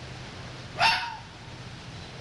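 A fox's alarm bark: one short, sharp bark about a second in, the warning call adult foxes use to alert their cubs or other foxes to danger.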